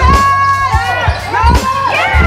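Basketball dribbled on a hardwood gym floor, low thumps about once every second or less. High, wavering tones run over the thumps.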